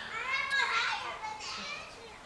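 Young children's high-pitched voices, unintelligible chatter and exclamations, dying away near the end.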